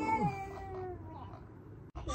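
A person's voice holding one long, meow-like vocal note that slides slowly downward and fades, then cuts off abruptly near the end.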